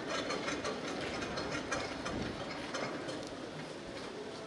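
A run of rapid, irregular clicks over steady outdoor background noise.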